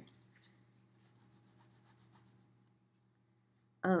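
A deck of tarot cards being shuffled overhand by hand: a faint, quick run of soft papery card slaps, several a second, that stops about halfway through.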